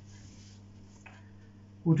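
A pause in talk filled by quiet room tone with a steady low hum and a brief faint rustle about a second in. The man's voice comes back near the end.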